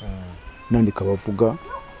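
A person's voice speaking briefly in the middle, with a faint, thin, high drawn-out sound behind it.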